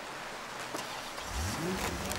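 A low vehicle engine rumble that comes in about halfway through and rises in pitch, over a faint steady background hiss.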